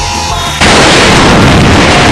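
Explosion: a sudden loud blast about half a second in, going on as a steady, loud rush of noise.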